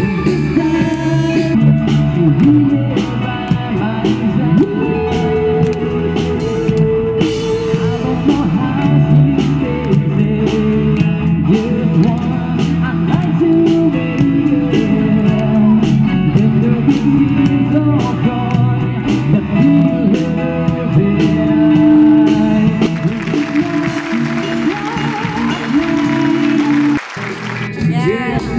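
A pop-rock song with a singing voice, guitars and drums playing continuously, with a brief drop in loudness near the end.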